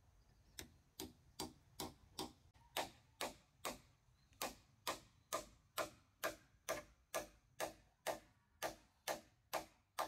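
Steel hammer driving a nail into a wooden beam: a steady run of sharp blows, a little over two a second, starting about half a second in and growing louder after the first few strokes.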